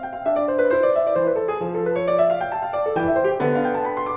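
Pre-CBS-era Steinway Model M 5'7" grand piano being played: a flowing run of quick notes in the middle register over longer-held bass notes.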